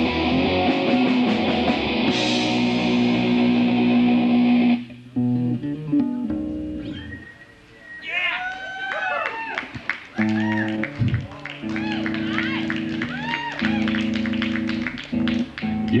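Live rock band with electric guitar, bass and drums playing, cutting off abruptly about five seconds in. After that come held bass and guitar notes, with electric guitar notes bending up and down.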